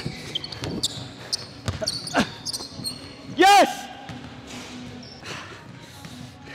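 A basketball being dribbled on a hardwood gym floor, several sharp bounces in the first two and a half seconds, then a loud shout from a player about three and a half seconds in.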